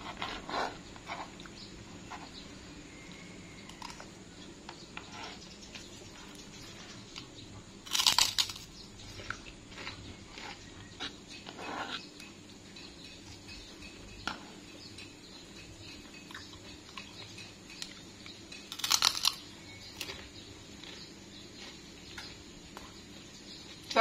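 Someone eating with a metal spoon on a plastic plate: small clicks and scrapes of the spoon, with chewing. There are two louder crunches, about eight seconds in and again near nineteen seconds, typical of biting into a krupuk cracker.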